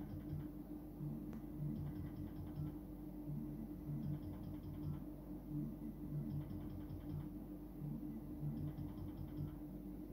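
Slot machine's electronic game sounds as the reels spin: a steady low hum under short low notes repeating, with faint clusters of high ticks every couple of seconds.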